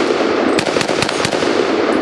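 Rapid semi-automatic fire from a Chinese Polytech AKS-762 rifle in 7.62×39mm, several shots a second with echo between them, the string stopping near the end.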